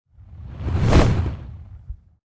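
Whoosh sound effect with a low rumble underneath, swelling to a peak about a second in and then fading away.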